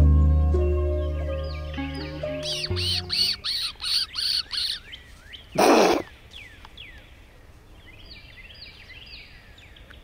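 Background music fades out over the first few seconds and gives way to outdoor birdsong: a bird repeats a high call about three times a second, followed by scattered chirps. About halfway through there is a single short, loud noise.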